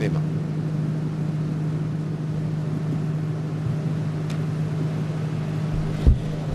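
A steady low hum over an even background hiss, with a faint click about four seconds in.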